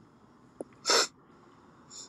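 A single short, sharp burst of breath from a person, about a second in, with no voice in it, then a faint breath in just before speech resumes.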